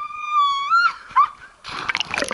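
A girl's long, high-pitched scream as she jumps, held on one note and cutting off just before a second in. Near the end comes the splash of her body hitting the water.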